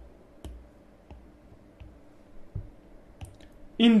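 Light clicks of a stylus tapping on a tablet screen, about six of them spaced roughly half a second to a second apart, as a drawing is selected and duplicated. A man's voice begins at the very end.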